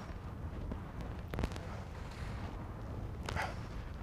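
Steady low outdoor rumble, with a couple of faint brief clicks partway through.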